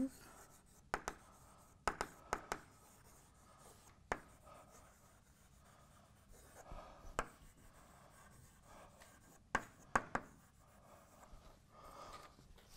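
Chalk writing on a blackboard: faint scratching punctuated by a handful of sharp taps as the chalk strikes the board.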